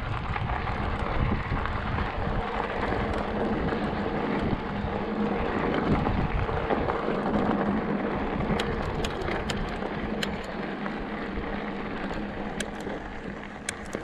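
Mountain bike tyres rolling over loose gravel, with wind rushing over the microphone. Scattered sharp clicks in the second half.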